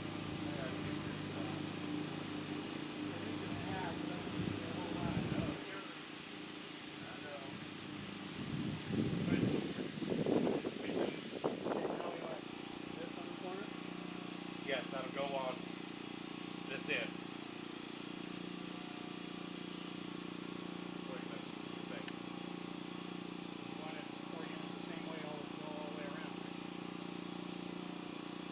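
A steady engine hum runs throughout, its deepest rumble dropping away about five and a half seconds in. Faint voices talk over it, loudest for a few seconds around the middle.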